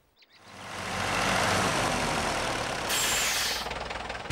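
Tractor engine running as the tractor drives up, fading in over the first second and then holding steady. A short hiss about three seconds in, as it pulls up.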